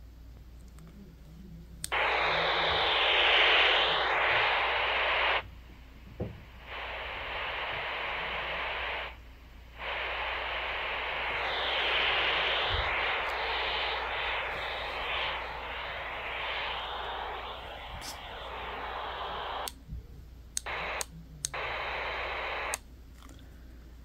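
Handheld walkie-talkie hissing radio static through its small speaker, used as white noise. The static starts about two seconds in and cuts on and off abruptly several times, ending in a few short bursts.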